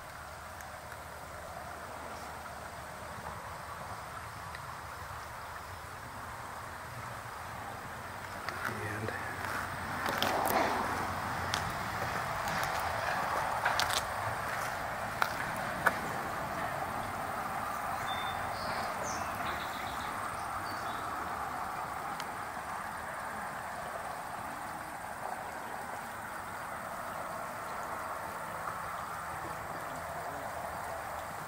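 Creek water running steadily below a bridge, growing louder from about eight seconds in, with a few sharp clicks and knocks near the middle.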